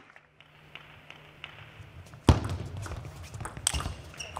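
Table tennis ball struck by bats and bouncing on the table in a doubles rally: a few faint ticks, then one loud sharp knock a little past halfway, and a quick run of clicks near the end.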